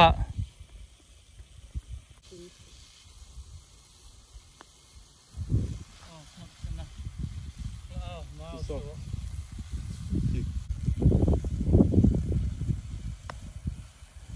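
Gusts of wind buffeting the microphone as a low, uneven rumble, starting about five seconds in and growing stronger toward the end. A single light click near the end as a putter strikes a golf ball.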